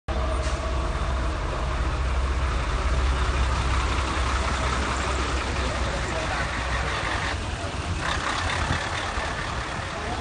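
Diesel engine of a parked fire truck idling with a steady low rumble that weakens after about six seconds.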